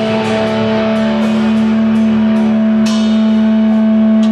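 Live rock band: an electric guitar holds one steady, ringing chord through an amplifier, with a few light cymbal taps, the strongest about three seconds in.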